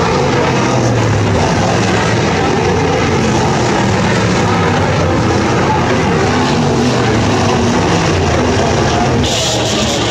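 Several 410 sprintcars' V8 engines racing, their pitch rising and falling as they rev through the corners and pass. A brighter hiss joins near the end.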